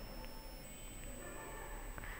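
Quiet pause with only faint background hiss and a thin, steady high-pitched whine from the recording.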